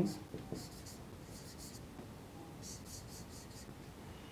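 Marker pen writing on a whiteboard, faint: a few quick strokes about a second in and a longer run of strokes near three seconds.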